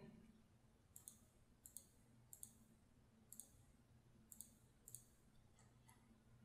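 About seven faint clicks from computer controls, spaced irregularly half a second to a second apart, some in quick pairs, over a low steady room hum.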